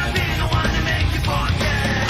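Loud intro music playing steadily, in a heavy rock style.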